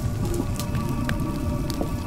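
Fire crackling with scattered small pops, over a held, sustained music drone.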